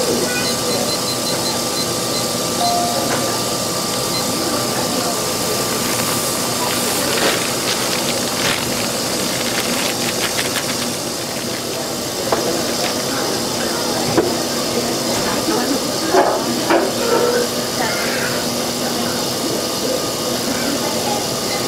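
Electric mixer running steadily, with a constant motor hum and the churn of the scraper arm through a thick fudge mixture in a steel bowl. Scattered knocks and clatters come through in the second half.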